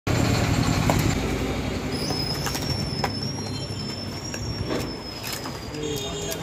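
A low rumbling background noise, loudest at the start and easing off, with a few sharp clicks from a cardboard medicine box being handled and opened. A thin, steady high whistle runs from about two seconds in to near the end.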